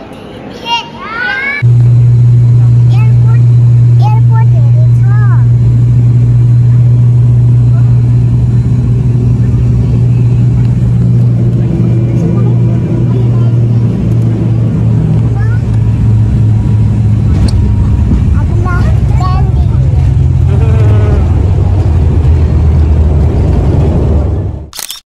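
Steady, very loud drone of an airliner's engines and propellers heard inside the passenger cabin, cutting in abruptly about a second and a half in, with a low hum that drops slightly in pitch near the end. Children's voices are heard briefly at the start.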